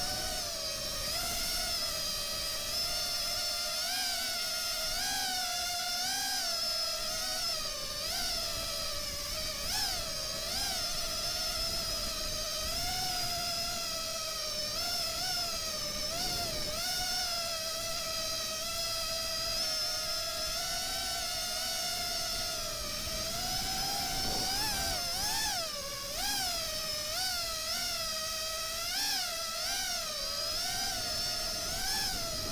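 FPV racing quadcopter's brushless motors (Cobra 2207 2300kv) spinning props, a high buzzing whine whose pitch keeps swooping up and down as the throttle is worked.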